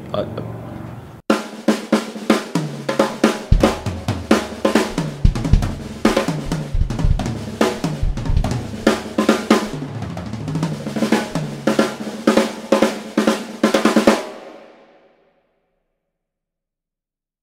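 A drum kit played in a busy, fast pattern of snare, bass drum and cymbal hits, with runs of pitched tom hits stepping down in pitch. It starts abruptly about a second in and fades out shortly before the end.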